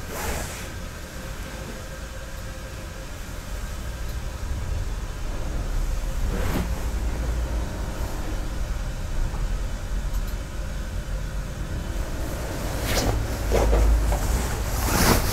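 Soft knocks of tea utensils set down: a lid rest placed on the tatami about halfway through, then a bamboo ladle laid on it with two light clacks near the end. Under them runs a steady low rumble that swells near the end.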